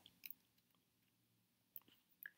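Near silence: room tone in a pause of the voice-over, with a few faint short clicks about a quarter second in and near the end.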